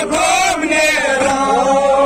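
A male voice chanting a Kashmiri noha, a mourning lament, amplified through a microphone, with long held notes that bend slowly in pitch.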